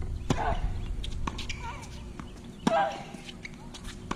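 Tennis rally on a hard court: sharp pops of racket strings striking the ball, with a lighter pop about a second in. A player grunts with the two loudest hits, one just after the start and one near three seconds in.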